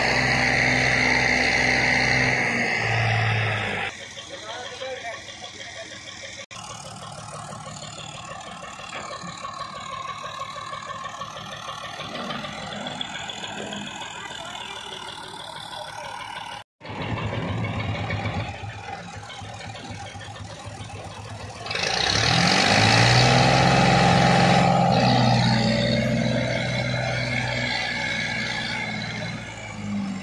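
Tractor diesel engine running while it pulls a trolley loaded with cotton stalks. The level changes abruptly several times. It is loud for the first few seconds, quieter through the middle, and loudest with a rev from about 22 to 25 seconds in.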